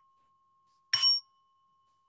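A small bell struck once about a second in, its clear high tone ringing on and slowly fading.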